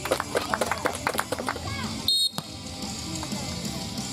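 A short referee's whistle blast about two seconds in, among quick claps, shouts and music.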